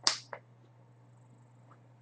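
Two short sharp snaps right at the start, about a third of a second apart, the first the louder, over a steady low hum.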